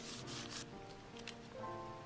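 Hands rubbing paper flat: a short rough swish as a strip of black cardstock is pressed down and smoothed onto a kraft-paper bag, in the first half second or so, over soft background music.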